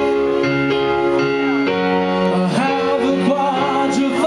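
Live rock band playing held chords, with a singer's voice coming in about halfway through.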